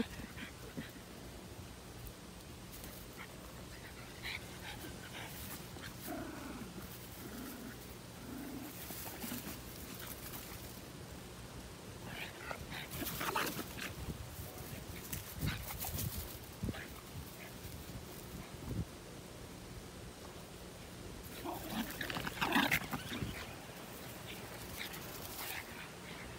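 Small dogs making short, scattered vocal sounds in bursts a few seconds apart while sniffing and rooting in dry grass.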